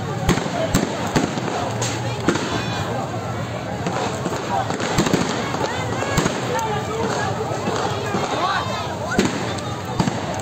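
About eight sharp gunshot bangs at irregular intervals, several close together in the first two seconds, over a crowd of protesters shouting.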